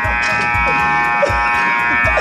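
Ice rink scoreboard horn sounding one long, steady buzz, over background music with a steady bass beat.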